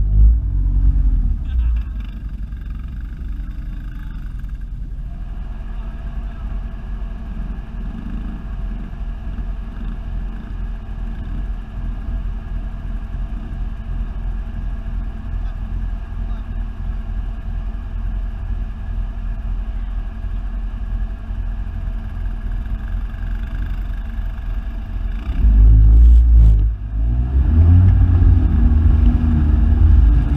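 ATV engine running steadily at low speed through tall grass and mud ruts. It revs up louder in the first couple of seconds and again in the last few seconds, the pitch rising and falling with the throttle.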